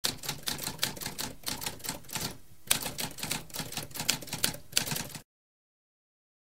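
Manual typewriter typing: a rapid run of keystrokes, several a second, with a short pause a little before halfway and one sharper strike after it. The typing stops abruptly after about five seconds.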